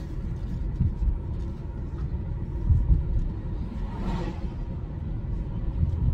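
Steady low rumble inside a car's cabin, broken by a few irregular low thumps, with a faint breathy rush about four seconds in.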